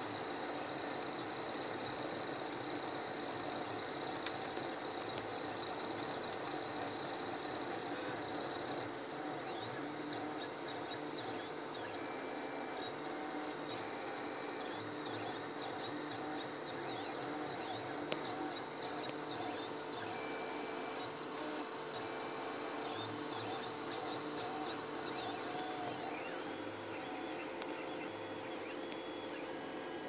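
Mendel Max 2.0 3D printer's stepper motors whining as it prints: a steady high whine for about the first nine seconds, then repeated rising and falling sweeps in pitch as the axes speed up and slow down. A steady low hum runs underneath.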